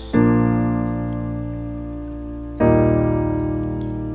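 Piano playing two held chords of a worship-song chorus, the first struck just after the start and the second about two and a half seconds in, each left to ring and fade. The second is an E-flat major chord.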